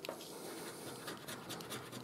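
A Million Flax scratch card being scratched: a faint, quick run of rasping strokes scraping off its silver coating.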